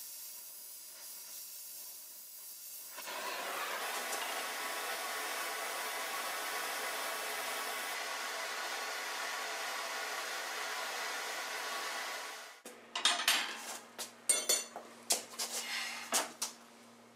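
Oxy-acetylene cutting torch flame hissing steadily while it heats an iron part, louder from about three seconds in. It cuts off abruptly near the end, followed by a run of sharp metallic clinks and knocks.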